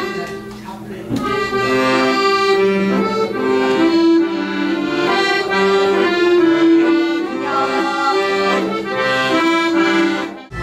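Piano accordion played solo: a melody over held chords, swelling louder about a second in.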